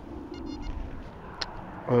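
Metal detector giving a short, high-pitched target tone about half a second in, for a target that reads 86. A faint click follows about a second later, over low background noise.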